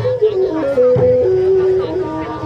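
Lakhon basak theatre ensemble music: a sustained melody line stepping from note to note, with drum strokes at the start and about a second in.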